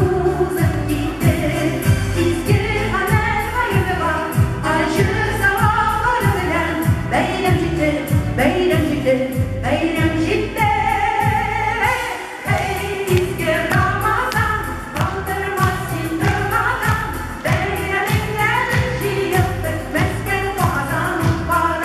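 Women's vocal group singing a Tatar song over musical accompaniment with a steady bass beat, which drops out briefly about halfway through.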